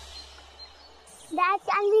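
A low music tail dies away into faint background noise, then about a second and a half in a child's high voice says "Can we…".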